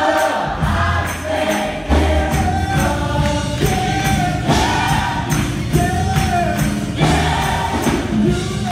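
Gospel choir singing in full voice over a live band that keeps a steady beat with a deep bass line.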